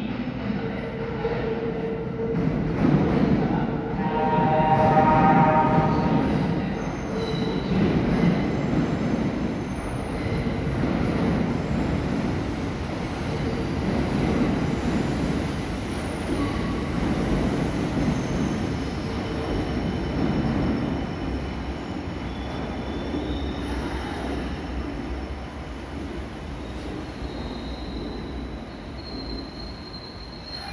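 Kintetsu 23000 series Ise-Shima Liner limited express train running slowly into an underground platform, its wheels and motors rumbling with echo. A short horn-like tone sounds a few seconds in, the loudest moment, and thin high wheel squeal comes in near the end as it slows.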